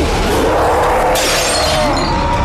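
Trailer sound effects: a wavering, gliding tone, joined about halfway through by a sudden harsh crackling noise like something shattering.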